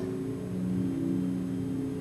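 A low, steady drone of a few held notes, the kind of ambient music bed laid under a broadcast ghost-hunt segment, with one note shifting about half a second in.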